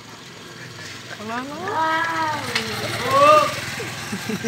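A drawn-out voice call that rises and then falls in pitch for about a second and a half, followed by a shorter rising call near the end.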